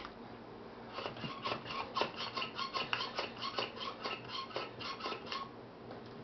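Vacuum pump plunger of a Filmtools Gripper 3025 suction-cup camera mount being worked in quick, even strokes, about four short rasps a second, stopping about five seconds in. Each stroke draws air out from under the cup to seal it to the table.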